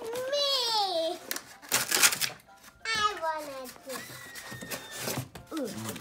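A young child's high voice making two long, gliding wordless vocalizations, with a brief rustle of plastic packaging about two seconds in.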